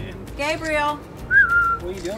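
A person whistling once: a short single tone that slides down a little, about halfway through. Just before it comes a brief wavering voice call.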